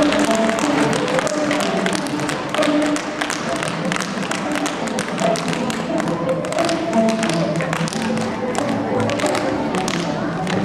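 Tap shoes striking a wooden stage floor in dense, quick clusters of taps, over recorded music.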